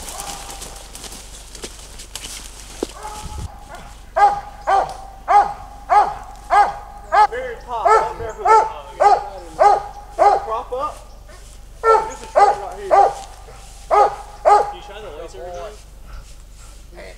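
Squirrel hunting dog barking treed, the sign that it is holding a squirrel up the tree. About four seconds in, a steady run of barks starts at about two a second, breaks off briefly, and a few more barks come near the end.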